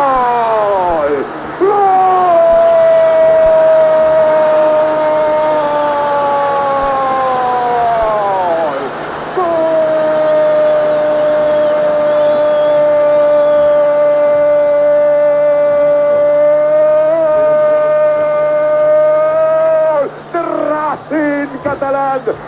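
A football commentator's long, drawn-out Spanish goal cry, "gol" held as one note that sinks in pitch over about eight seconds, then, after a quick breath, a second steady held note lasting about ten seconds. Ordinary speech resumes near the end.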